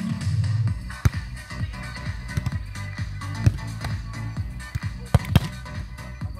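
Dance music with a steady bass line playing over a loudspeaker, with a few sharp smacks of a beach volleyball being hit, the loudest about a second in and a quick pair near the end.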